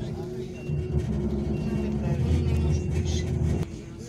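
City bus engine running loudly under the floor, a heavy low rumble that cuts back sharply near the end. A short high beep, like a vehicle's reversing alarm, sounds about once a second through the first half.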